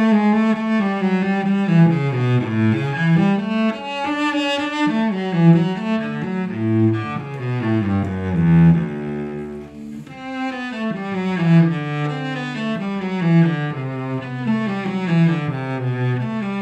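Cello played with the bow: one flowing melodic line of quick notes in its low and middle range, settling on a low held note past the middle before the running figures pick up again.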